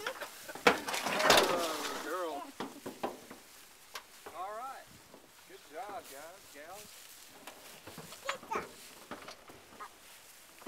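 Indistinct high-pitched voice in three short wavering phrases, the first and loudest about a second in, with a few sharp clicks between.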